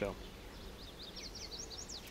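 A small bird singing in the background: a quick run of short, high chirps starting about a second in.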